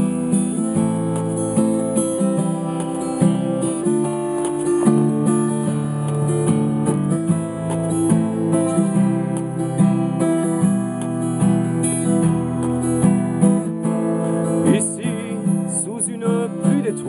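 Acoustic guitar strummed steadily through a chord progression, a purely instrumental passage with no singing.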